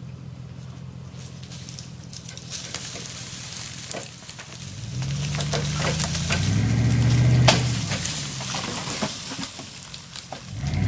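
Ford F250 pickup's engine running low, then revving up under load from about halfway as it drags a tree out by a cable, climbing to a peak and easing off near the end. Crackling and snapping of the tree and brush tearing loose run through it, with one sharp crack at the engine's peak.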